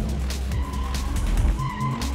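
Car tyres squealing in a skid from about half a second in until near the end, over background music with a steady beat.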